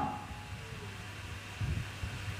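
A quiet pause: a steady low hum and faint room noise, with a slight low swell near the end.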